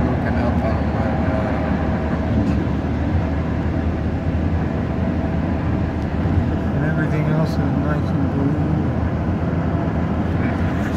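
Steady road noise inside a car cabin at highway speed, a continuous low rumble from the tyres and engine.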